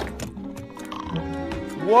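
Cartoon soundtrack with faint background music and a few quick clicks about as a drawer opens on a pistol. Near the end a man gives a loud, rising exclamation of "What?"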